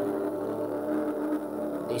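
Background music: a sustained, droning chord that holds steady, with no beat.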